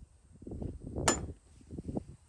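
An aluminium bracket being set down on a steel bus roof: light handling knocks, then one sharp metallic clink about halfway through.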